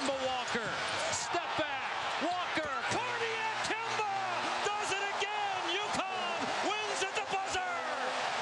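Packed basketball arena in the last seconds of a game: a ball dribbling and sneakers squeaking on the hardwood under loud, continuous crowd noise and shouting. A steady horn sounds about three seconds in, the end-of-game horn as the winning shot goes in.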